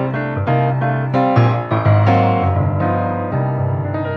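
Yamaha Disklavier E3 grand piano played acoustically, its hammers striking the strings again now that the silent function is off. A continuous passage of chords over a moving bass line.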